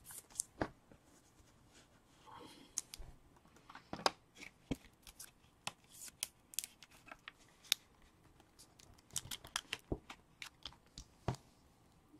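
A trading card and a clear plastic card holder being handled: scattered faint clicks, taps and short rustles of plastic and card.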